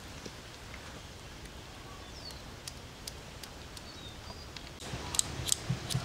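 Faint outdoor background with a few thin bird chirps. Near the end come three sharp clicks of a cigarette lighter being flicked, which doesn't light.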